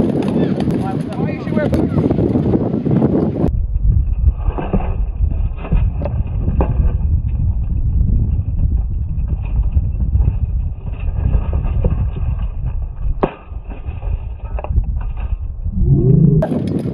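Voices for the first three seconds or so, then the sound drops into slowed-down playback: a deep wind rumble on the microphone, with several slowed, dull knocks of sparring swords striking each other spread through the rest.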